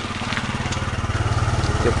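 A small engine running with a rapid, even putter, growing slightly louder.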